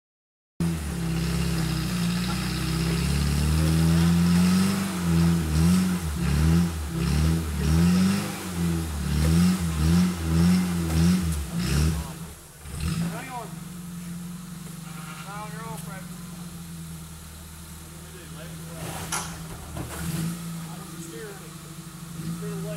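Off-road vehicle engine revved repeatedly, its pitch rising and falling in quick surges, then dropping about halfway through to a steady idle, with distant voices calling over it.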